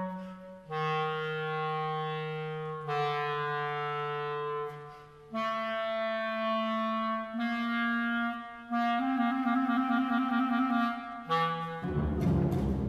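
Clarinet playing a slow solo phrase of long held notes with short breaks between them, the last long note wavering. At the very end the string orchestra comes in loudly.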